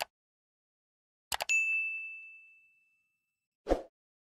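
A few short sharp clicks, then a single bright ding about a second and a half in that rings on in one high tone and fades away over a second and a half. A dull thump comes near the end.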